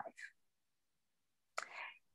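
Near silence in a pause between sentences of a woman's speech over a video call, with the last bit of a word at the start and a short, faint breath near the end before she speaks again.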